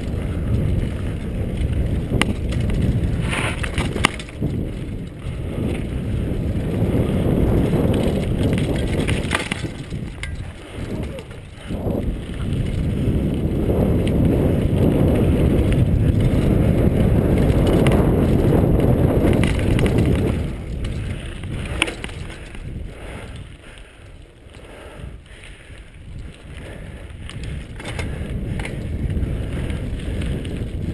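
Mountain bike rolling fast down a dirt forest trail: a steady low rumble of tyres on dirt and wind on the microphone, with scattered clicks and knocks from the bike rattling over bumps. The rumble eases for a few seconds past the middle and builds again near the end.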